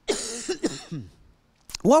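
A man coughing: one rough cough, then a few short throat-clearing sounds. He starts speaking again near the end.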